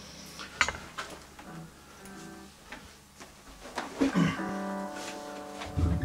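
Electric guitar being picked up and handled: a few sharp clicks and knocks, then strings ringing with a few plucked notes held for a second or so each.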